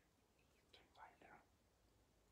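Faint whispering, brief, a little under a second in, over near silence.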